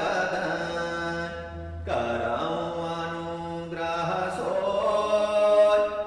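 A man chanting a devotional verse in long, held notes, with the pitch changing at breaks about two and four seconds in.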